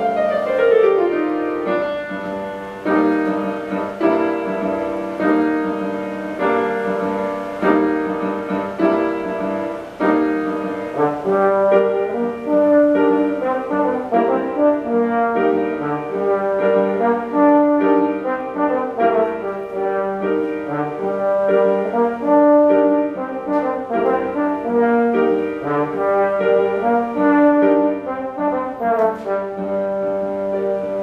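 Slide trombone and grand piano playing together. The trombone opens with a downward slide glissando, then plays a melody of short notes over the piano accompaniment.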